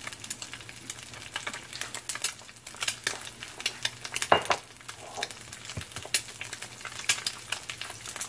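Two eggs frying in oil in a cast iron skillet: a steady sizzle with frequent crackling pops of spattering fat, and one brief louder noise a little past the middle.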